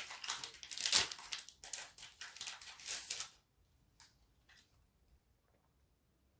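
Foil booster-pack wrapper crinkling and crackling as it is handled and the cards are slid out, with a sharper crackle about a second in. It stops after about three seconds, leaving only a couple of faint ticks.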